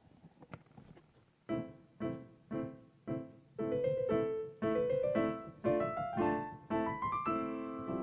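Casio Privia digital piano playing the opening of a piano piece: after a short quiet start, four separate chords about half a second apart, then quicker notes climbing in pitch, ending on fuller chords.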